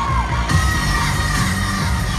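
Live pop concert music heard from within the arena audience, with a heavy pulsing bass beat and a high held tone, and the crowd cheering and screaming over it.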